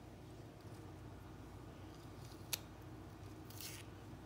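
Quiet room tone broken by one sharp click about two and a half seconds in and a short scratchy rustle near the end: small handling noises.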